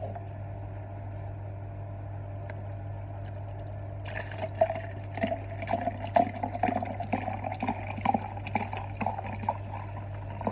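Apple juice pouring from a carton into a cup, starting about four seconds in and running on unevenly to the end. A steady low hum lies underneath throughout.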